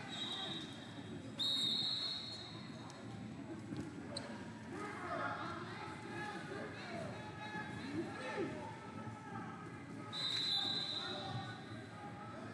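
Referee's whistle blasts echoing through a large sports hall: a faint one at first, a long blast about a second and a half in, and another near the end. Under them runs a steady murmur of crowd voices with occasional thuds.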